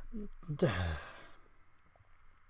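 A man's breathy sigh, falling in pitch, about half a second in, after a faint short murmur.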